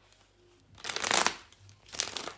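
Tarot cards being shuffled by hand: a short, loud flurry of cards rubbing and slapping together about a second in, after a near-silent start.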